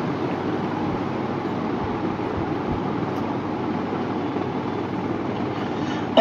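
Steady room noise with no voice: an even hiss and hum at a constant level.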